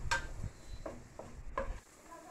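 Kitchen handling sounds at a stovetop pan: three or four light knocks and scrapes of a utensil against the pan, with a low rumble that stops shortly before the end.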